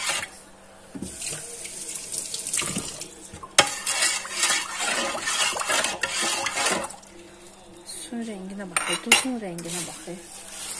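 Water sloshing and splashing in an enamel pot as a hand swishes a peeled potato around in it, with one sharp knock against the pot about three and a half seconds in.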